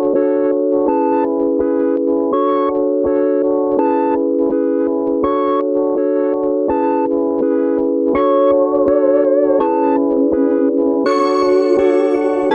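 Omnisphere 'Humble and Square' synth patch, a pulsing simple synth, playing a repeating trap melody on its own, its chords changing in an even rhythm. About eleven seconds in the sound turns brighter and fuller.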